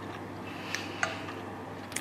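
Quiet chewing of a mouthful of taco mac and cheese, with a few soft mouth clicks, the first about three-quarters of a second in.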